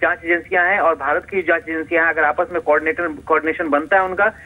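A man speaking Hindi over a telephone line, continuously, with the thin, narrow sound of a phone call.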